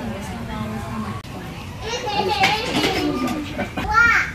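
Children's voices and background chatter. About two seconds in there is a burst of high-pitched children's shouting, and another short high call near the end.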